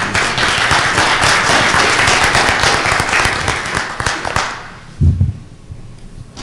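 Audience applauding, the clapping fading away after about four and a half seconds. A brief low thump follows about five seconds in.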